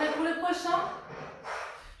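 A woman's voice briefly speaking or vocalising in the first second, then a short breathy rush about one and a half seconds in.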